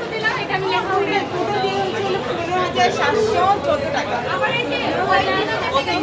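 Overlapping chatter: several people standing close together, all talking at once so that no single voice stands out.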